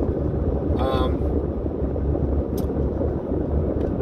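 Steady low rumble of a car's road and engine noise heard inside the cabin while driving. A brief vocal sound from the driver comes about a second in.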